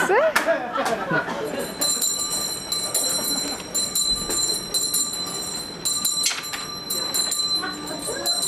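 A hand bell rung over and over, starting about two seconds in and ringing on steadily, with voices from the audience around it.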